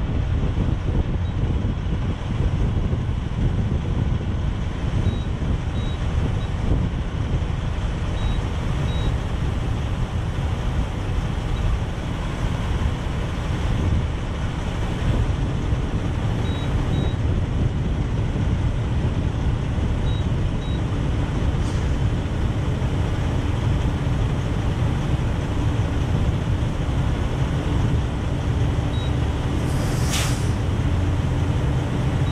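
Steady low rumble of idling diesel truck engines. A short hiss comes right at the end.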